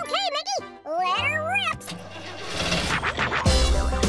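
High-pitched, sped-up cartoon chipmunk voices chattering in quick rising-and-falling squeaks for the first two seconds. About three and a half seconds in, a cartoon tractor engine starts and settles into a low, steady rumble, with music underneath.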